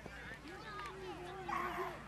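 Children's and adults' voices talking and calling over one another, with a brief loud, harsh cry about three-quarters of the way through.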